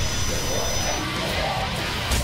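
Film soundtrack: dramatic music score mixed with a loud, steady rushing noise.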